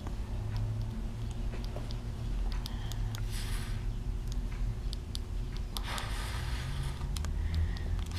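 A steady low room hum with faint scattered clicks, and two breathy exhalations, about three and about six seconds in, from a person holding a neck-muscle effort.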